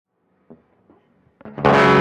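Four-string license-plate cigar box electric guitar: a small click and a few faint notes, then a loud chord struck about a second and a half in and left ringing.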